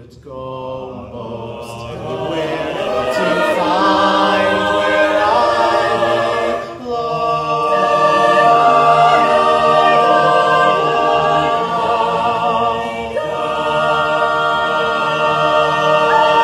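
Mixed-voice a cappella choir singing sustained chords without words, swelling from soft to full. There is a short break about seven seconds in, then a loud, held chord with vibrato.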